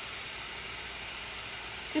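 Chopped baby bella mushroom stems sizzling steadily in olive oil in a stainless steel skillet over low heat.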